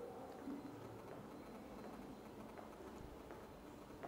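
Faint footsteps of a person walking, a few soft taps over quiet background noise.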